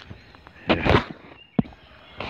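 Footsteps and a bicycle being pushed off a road onto grass and leaves, with a loud rustle about two-thirds of a second in and a single sharp click from the bike shortly after.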